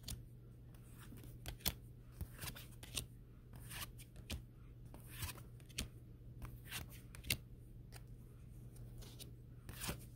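Faint, scattered clicks and slides of new tarot cards being handled one at a time from a hand-held stack, card edges snapping and rubbing as each is moved to the front.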